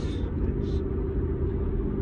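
Steady low rumble of a four-wheel-drive vehicle's engine and road noise heard from inside the cab while driving.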